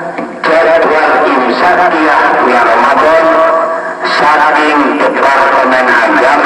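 A man's voice chanting the tarhim in long, drawn-out, ornamented notes, with brief breaks for breath near the start and about four seconds in.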